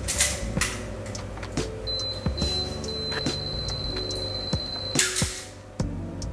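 A film SLR's self-timer being tested. A click as it is set off, then a steady high-pitched whir for about three seconds, ending in a loud clack about five seconds in as the shutter fires, which shows the self-timer works. Background music plays underneath.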